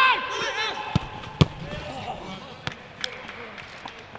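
A player's shout on a football pitch, then sharp thuds of a football being kicked, two close together about a second in, the second the loudest, with a couple of lighter knocks later and voices calling in the background.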